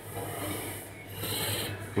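Soft rubbing and rustling noise with a steady low hum underneath, rising briefly twice.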